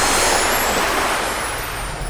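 Ocean surf breaking on a beach: a steady rush of wave noise that slowly fades.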